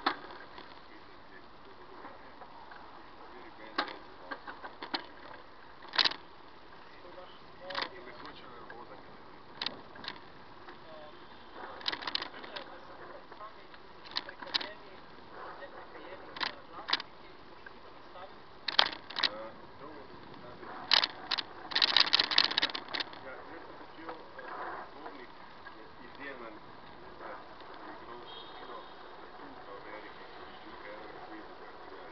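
Irregular sharp clicks and knocks, like handling noise on a moving handheld camera, with a dense clatter about three-quarters of the way in. Under them is a steady low background of street noise with faint, indistinct voices.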